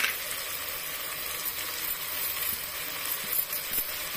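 Vegetables and fresh methi leaves sizzling in hot oil in an aluminium pressure cooker, a steady hiss, with a single light click at the start.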